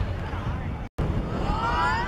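Wind rumbling on the camera microphone. After a brief cut, a group of boys in a team huddle shout together, their voices rising in pitch and growing louder.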